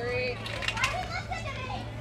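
Girls' voices calling and chattering, the cheering and chatter of a youth softball team, with a couple of sharp clicks or claps a little under a second in.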